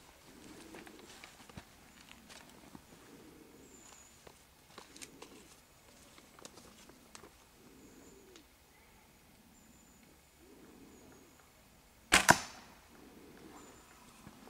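One arrow shot from a traditional bow: two sharp cracks a fraction of a second apart, the string's release and then the arrow striking the foam 3D target, about twelve seconds in.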